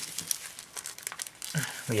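A thin clear plastic comic bag crinkling and rustling as a comic book is slid into it by hand, a quick run of irregular crackles.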